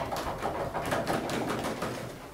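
Scattered applause from a small audience: many quick, irregular claps.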